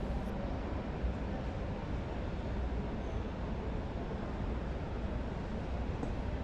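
Steady background noise of a large exhibition hall: an even low rumble and hiss, with no distinct events.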